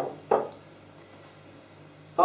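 Two brief syllables of a woman's voice in the first half second, then quiet room tone with a faint steady low hum.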